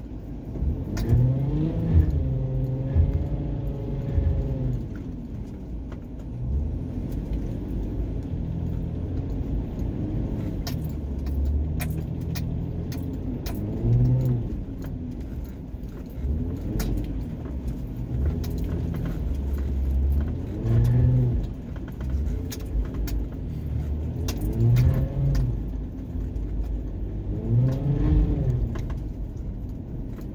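A vehicle engine being driven, its note rising and falling over and over, about every three to four seconds, over a low rumble. Light rattles and clicks jangle throughout.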